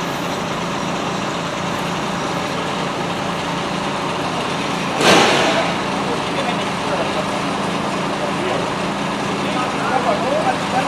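Fire engines running steadily at a fire scene, a constant engine drone with a low hum. About halfway through there is one sudden loud burst of noise that fades within a second.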